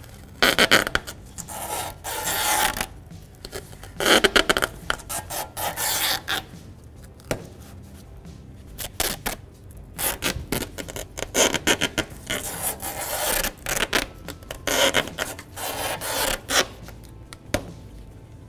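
Masking tape being pulled off its roll in a series of short bursts and wrapped around a Styrofoam bumper absorber.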